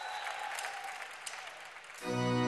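Studio audience applause and crowd noise, with scattered sharp claps, easing slightly toward the end.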